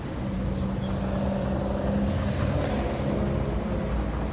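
A motor vehicle's engine running in street traffic: a steady hum that starts just after the beginning and dies away near the end.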